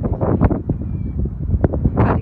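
Wind buffeting a phone's microphone: a loud, uneven low rumble with irregular gusty thumps.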